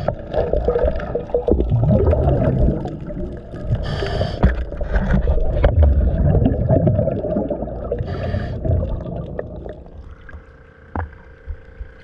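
Scuba diver's regulator breathing underwater: two short hisses of inhaled air about four seconds apart, between long gurgling rumbles of exhaled bubbles. The sound grows quieter near the end.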